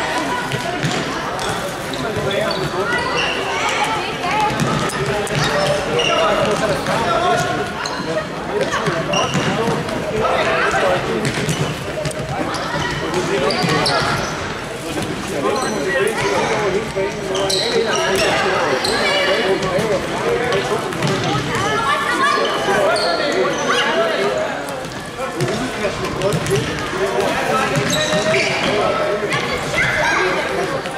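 Indoor football on a wooden sports-hall floor: indistinct voices of players and onlookers calling out throughout, with the ball being kicked and bouncing, echoing in the large hall.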